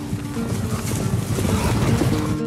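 A swelling rush of noise with a deep rumble, growing louder toward the end, as the guitar music drops away.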